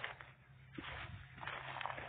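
Faint handling noise: a few light clicks and rustles as fishing tackle is picked up beside a plastic tackle box, over a steady low background.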